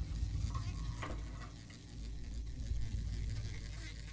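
Experimental improvised percussion: a rustling, scraping noise texture over a low rumble, with one sharp knock about a second in.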